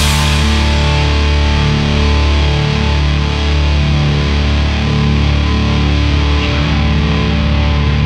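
Live rock band with distorted electric guitars, bass and drums holding a loud, sustained droning chord, with a note sliding in pitch near the end.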